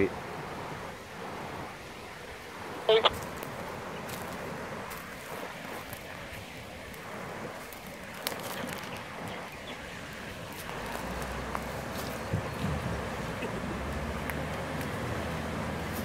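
Steady rush of a shallow river running over rocks, with a four-wheel drive's engine coming in as a low rumble about two thirds of the way through and growing louder as the vehicle drives into the water. A short laugh about three seconds in.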